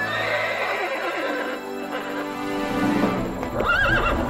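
A horse neighing over music, with a quavering, wavering whinny near the end.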